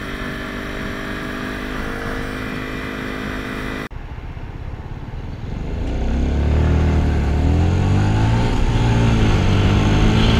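Motorcycle engine at a steady cruise, heard from the rider's helmet camera. It breaks off suddenly about four seconds in. Another motorcycle's engine then picks up, its pitch rising and falling as it accelerates.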